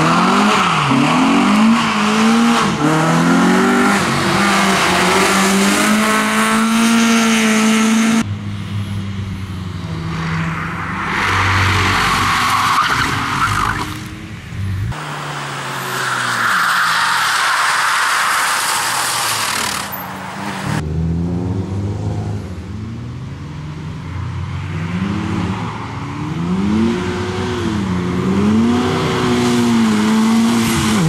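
A succession of rally cars driven hard round a tarmac circuit, their engines revving up and falling back through gear changes. Tyres squeal through the corners, most plainly in the middle of the stretch.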